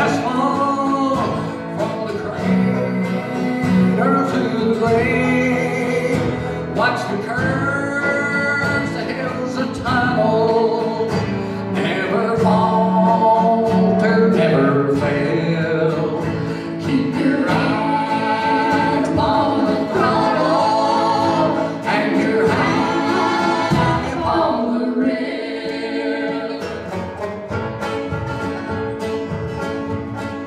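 Gospel folk song played live: a man singing lead over plucked banjo, strummed acoustic guitar and cello. The voice drops out about three quarters of the way through while the instruments carry on.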